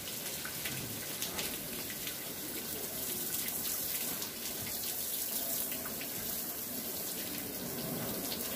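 Garden hose spraying water steadily onto a car's rear window and spoiler, rinsing off a coating of wet volcanic ash.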